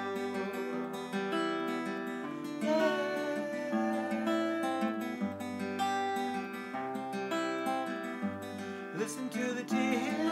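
Steel-string acoustic guitar played fingerstyle, moving through a chord progression with the bass note changing every second or so.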